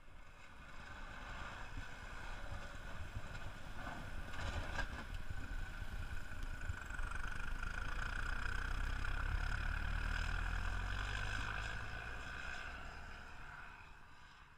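Valtra N101 tractor's four-cylinder diesel engine running as the tractor pushes a V-plough towards the camera. It grows louder as the tractor comes close, is loudest past the middle, and fades near the end as the tractor moves off.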